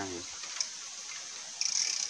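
Fishing reel clicking as a hooked catfish is played just after the strike, over a steady hiss of running river water; a single click about half a second in and a brief louder, higher burst near the end.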